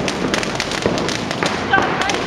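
Fireworks and firecrackers going off in a rapid, irregular string of sharp bangs and crackles.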